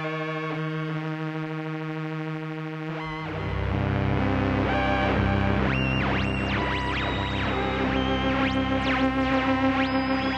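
A Moog Muse analog synthesizer plays oscillator sync, with oscillator 2's frequency modulated by a slewed LFO, so the bright sync overtones glide up and down at random. A single held note gives way to fuller chords with a deeper bass about three seconds in. A quick throbbing in level comes near the end.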